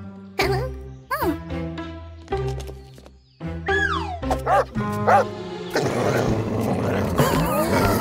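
Cartoon soundtrack: background music with a few short gliding vocal sound effects, then a cartoon dog barking and growling over the music in the second half.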